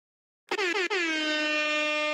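Air-horn sound effect on an intro title card: two short blasts, then one long held blast at a steady pitch.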